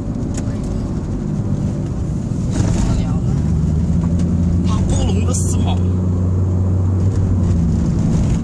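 Steady low drone of a car's engine and tyres heard from inside the cabin, growing louder about two and a half seconds in.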